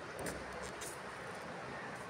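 Low, steady background noise with a few faint rustles in the first second.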